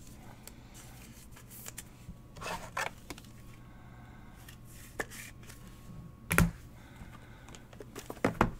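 Trading cards being handled by hand: faint rustling and sliding of cards with a few light clicks, and one sharper tap about six seconds in, over a low steady hum.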